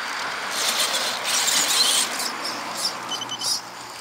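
Radio-controlled rock crawler working on a boulder: a steady whir from its small electric motor and gears, with a louder rush of scraping and clattering from about half a second to two seconds in as it comes back down off the rock, then lighter ticks and squeaks.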